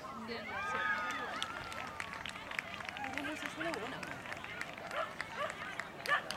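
Indistinct voices of bystanders talking, with scattered light clicks.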